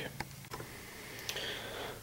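Quiet room tone with a faint steady hiss and a few light clicks: two near the start and one just past the middle.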